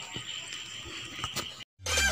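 Faint outdoor ambience with a steady high-pitched drone and a few light clicks. The drone cuts out abruptly near the end, and music starts just after.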